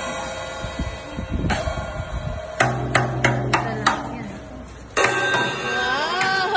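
A toddler hitting a drum kit with a wooden drumstick: a single strike, then an uneven run of about five hits, then one more near the end, each ringing on.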